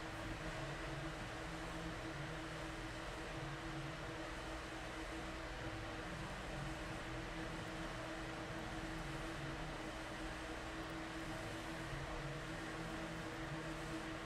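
Steady background hum and hiss of room tone, with one constant low tone running under it and no distinct events.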